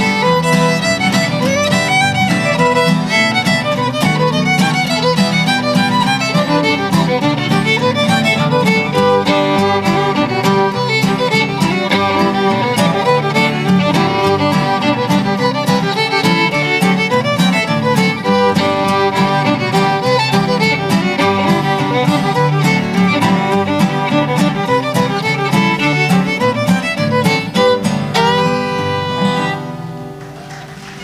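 A fiddle plays a tune with acoustic guitar accompaniment keeping rhythm underneath. Near the end the fiddle slides up into a final held note and the tune stops.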